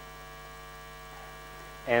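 Steady electrical mains hum in the hall's sound recording, with no other sound until a man's voice begins just at the end.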